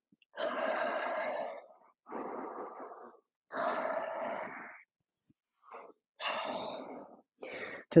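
A person taking a series of slow, deep, audible breaths, each about a second long with short pauses between, during a cool-down stretch after a workout.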